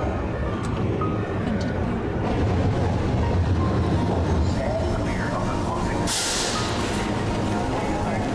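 Subway train running with a steady low rumble, then a short, sharp hiss about six seconds in.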